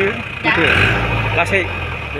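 Mahindra jeep engine running, heard from inside the cab, with a low rumble that grows louder a little under a second in.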